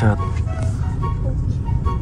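Steady low rumble inside a car's cabin as it creeps along in stop-and-go traffic, with faint background music over it.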